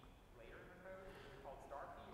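A student's voice asking a question, heard only very faintly in short broken phrases.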